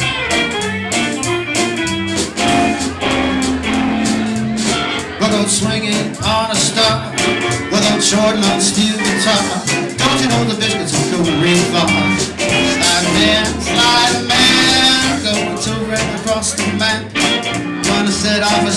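Live country band playing: hollow-body electric guitar, upright bass, drum kit and pedal steel guitar, continuous and loud.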